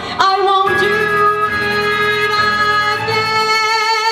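Young female vocalist singing a Broadway show tune into a microphone over instrumental accompaniment. She holds one long note that scoops up into pitch at its start, then moves to another long note with a wavering vibrato about three seconds in.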